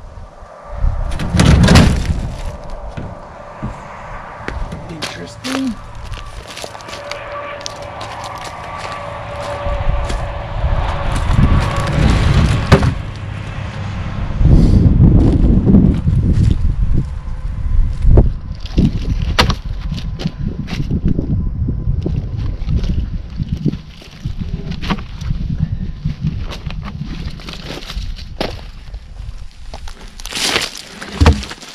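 Heavy maple log being worked off a pickup's tailgate and levered over gravel with a cant hook: a series of loud wooden thuds and knocks, the loudest about two seconds in and again midway, with scraping and clanks of the hook between them.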